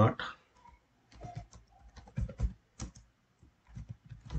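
Computer keyboard typing: a run of about a dozen quick keystrokes, spelling out a short line of text.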